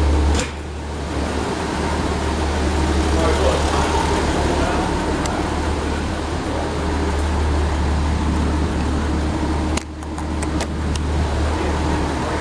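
Steady low rumble of the M8 Greyhound armoured car's six-cylinder engine idling, with a few light clicks about ten seconds in.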